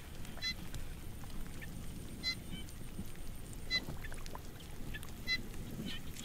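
A bird calling in short, pitched notes about every second and a half, over a low, even background noise.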